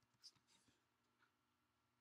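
Near silence: faint room tone in a pause between spoken phrases.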